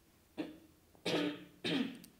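A person coughing and clearing their throat: three short sounds, the last two longer and louder.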